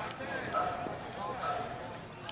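Several voices talking and calling out at a distance, with a couple of faint knocks among them.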